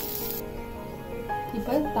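Background music with a singing voice. Underneath it, sandwiches sizzle on a grill-plate sandwich maker, and the sizzle cuts off suddenly about half a second in.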